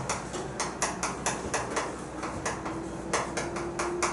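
Chalk writing on a chalkboard: a quick, fairly even run of short taps and scrapes, about four or five a second, as characters are written stroke by stroke.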